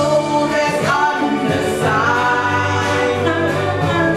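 Women singing into handheld microphones, with long held notes.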